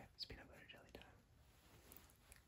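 A man whispering very softly, close to the microphone, as a whispered-voice hearing test; the faint whisper sits mostly in the first second and then fades to near silence.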